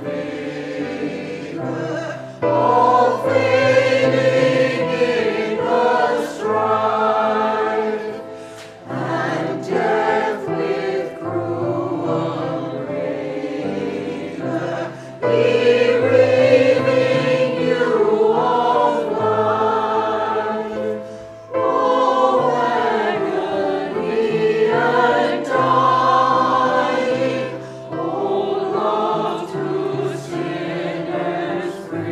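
Mixed church choir of men and women singing together, in phrases of about six seconds with brief breaks between them.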